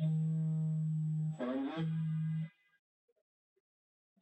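Steady electrical buzz through the public-address system as the microphone is taken up, broken about a second and a half in by a brief rising glide. It cuts off after about two and a half seconds.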